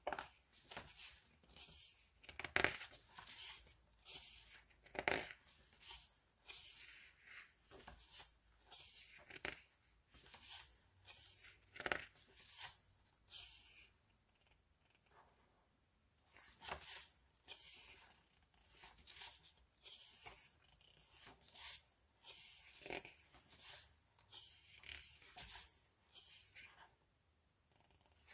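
Pages of an album photo book being turned one after another: a series of soft papery swishes, roughly one a second, with a pause of about two seconds halfway through.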